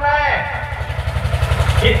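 A motor vehicle engine running with a steady low rumble under a man's amplified voice, which trails off in the first half second and resumes just before the end.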